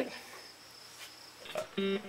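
A near-quiet pause with a faint, steady, high-pitched tone. Just before the end comes a short hummed man's voice.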